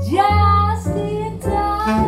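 Live jazz: a woman singing into a microphone over grand piano accompaniment. She slides up into a held note at the start, over low piano notes.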